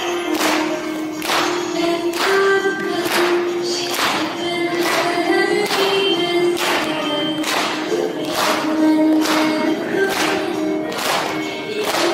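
A group of children singing a song together with a steady clapped beat, a little under two claps a second.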